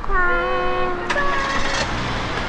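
Two long, held high-pitched vocal calls, the second higher than the first, over the low steady rumble of a car's engine as the car pulls away.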